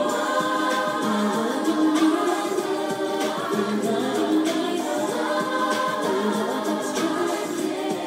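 Male voices singing a slow song together in harmony, with long held notes.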